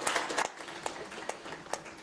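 Conference audience applauding, the clapping dense at first and then thinning to scattered claps.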